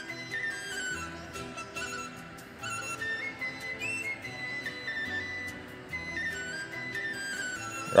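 Background music: a slow single-line melody stepping between notes over a soft, repeating lower accompaniment.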